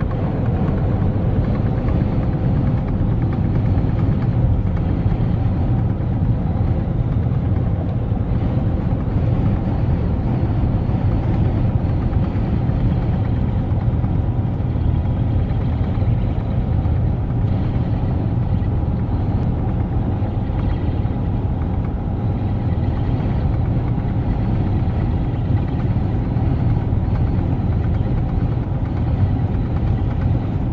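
Steady drone of a Volvo semi-truck cruising at highway speed, heard from inside the cab: low engine hum mixed with road and wind noise, unchanging throughout.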